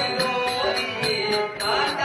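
Live stage-drama accompaniment: a harmonium's held notes under a sung or chanted voice, with a steady high tapping beat about three times a second.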